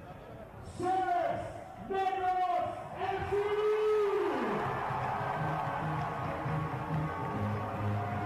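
A voice holds three long notes, the last one falling away, then music with a steady, stepping bass line comes in about halfway through.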